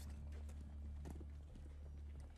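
Footsteps of several people walking on pavement, faint, over a steady low hum.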